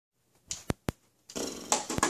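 Handling noise from a phone as recording starts: two sharp clicks, then a brief rustling scrape.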